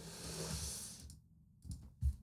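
Faint desk sounds: a soft hiss that fades away over about the first second, then a single soft click near the end, as of a computer key or mouse button being pressed.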